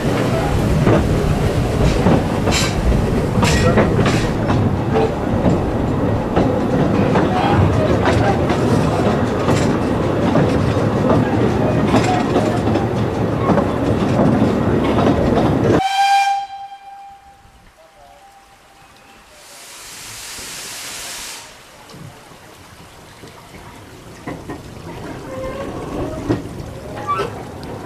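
Narrow-gauge steam train carriage running along the line, a steady rumble with regular clicks of the wheels over rail joints. About two-thirds through the rumble cuts off sharply; a brief steam whistle note follows, and a few seconds later a hiss of steam lasting about two seconds.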